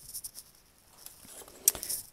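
Paper and cardstock being handled: light rustling and soft taps as a card is picked up and laid on a plastic paper trimmer, with one sharper click near the end.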